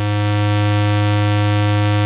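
A Poly Phobos analog oscillator in a Eurorack modular synth, sounding through the mixer as a steady, low, buzzy tone. The tone is unmodulated and not yet tuned to a note.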